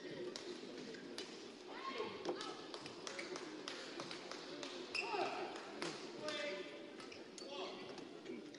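Sports-hall sound during a badminton match: a steady murmur of spectator voices, with many short sharp taps and clicks scattered throughout and a few brief gliding squeaks, around two and five seconds in.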